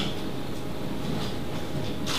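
Steady, even background noise of the room, with no speech.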